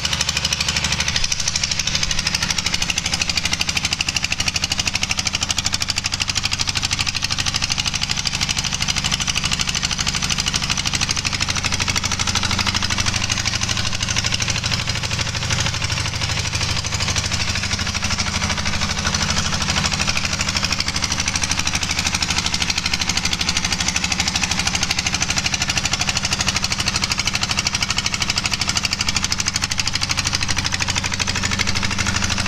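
Single-cylinder Lister diesel engine running steadily at a constant speed, its firing strokes making a fast, even beat.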